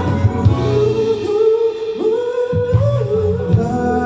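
Live band music: a male and a female singer singing together over saxophone, electric guitars, bass and drums, holding long notes, with the melody rising in pitch about two seconds in.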